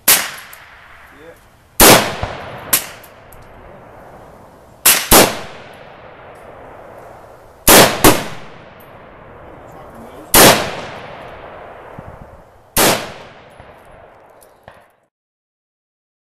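Armalite AR-180 5.56 mm rifle fired in single shots, about eight over twelve seconds, some in quick pairs about a third of a second apart, each shot's echo trailing off for a second or more. The sound cuts off suddenly near the end.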